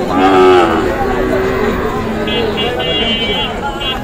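A Sahiwal bull calf bawls once, a call of about a second right at the start. Crowd talk carries on underneath.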